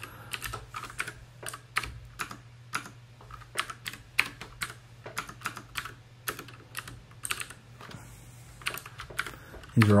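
Typing on a computer keyboard: an irregular run of keystroke clicks, with a steady low hum underneath.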